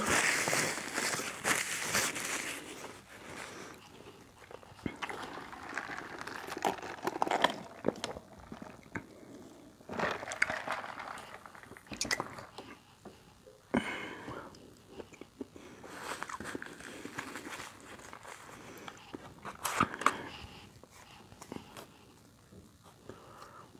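Close-miked eating sounds: a person biting and chewing fast food, with crunches and wet mouth clicks, loudest at the first bite right at the start.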